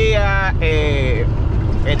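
A man speaking Spanish for about a second, then pausing briefly, over the steady low drone of a semi-truck cab cruising at highway speed.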